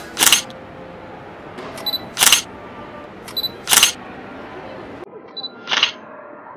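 Camera shutter firing four times, about every one and a half to two seconds; each of the last three shots is preceded by a short high focus-confirmation beep. Low steady room noise lies underneath.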